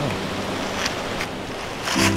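Steady rushing outdoor noise, like wind on the microphone, with a few brief soft rustles and faint background music underneath.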